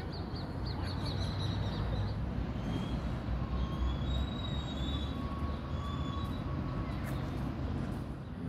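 Outdoor city ambience: a steady low rumble of traffic, with birds chirping in the first couple of seconds and a thin high squeal that comes and goes in the middle.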